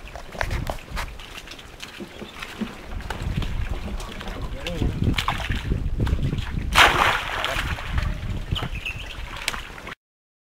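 Water sloshing and splashing as aloe vera leaves are swirled by hand in a stainless-steel washing tank, under a low rumble and scattered clicks, with one louder burst of noise about seven seconds in.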